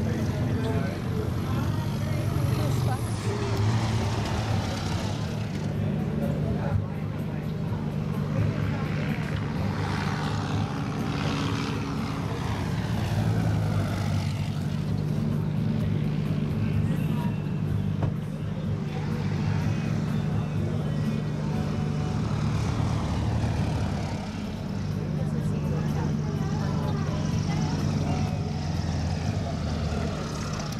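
Light propeller planes on approach to land, heard as a steady engine drone with a low hum, and indistinct voices in the background.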